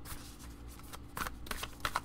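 Tarot deck being shuffled by hand: a few short, papery card rustles, most of them in the second half.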